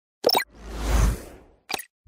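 Animated logo-intro sound effects: a short pop, then a deep whoosh that swells and fades over about a second, and another quick pop near the end.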